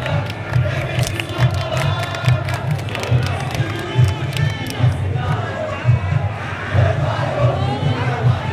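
Samba school drum section playing a samba beat, with deep pulsing bass drums and sharp percussion hits. A crowd sings and shouts along.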